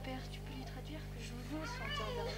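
A high-pitched voice sliding up and then down in pitch near the end, amid quieter talk, over a steady low hum.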